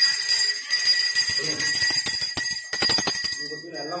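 A hand-held puja bell rung rapidly and continuously, its clapper striking many times a second over a bright, sustained high ring. The ringing stops a little past three seconds in and the tone dies away.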